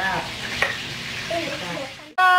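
Children's voices in short, faint snatches over a steady hiss.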